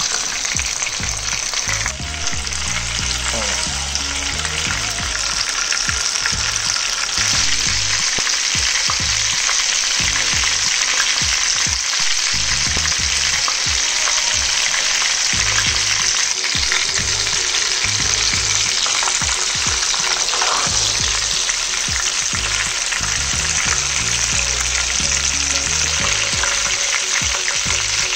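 Hot oil sizzling steadily in a frying pan around breaded, minced-meat-wrapped chicken sausage rolls as they shallow-fry.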